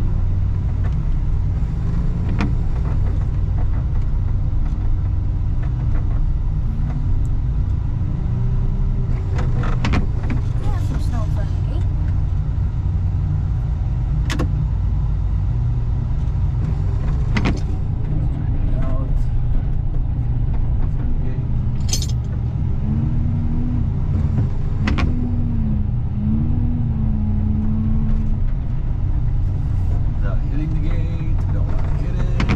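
Wheel loader's diesel engine running steadily under load with a deep, constant drone while pushing slushy snow with its front plow blade. Occasional sharp clanks and rattles come from the machine and blade.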